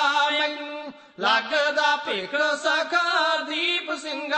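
Punjabi kavishri: a male voice singing in a drawn-out, chant-like melody with wavering, ornamented pitch and no instruments, broken by a short pause about a second in.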